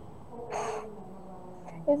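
A person's short, sharp intake of breath about half a second in, between sentences of reading aloud, heard through a video-call microphone; the voice starts speaking again near the end.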